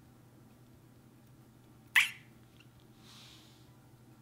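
A mini water balloon filled with clear glue bursts once with a sharp pop as scissors cut it, about halfway through. About a second later comes a faint, soft hiss.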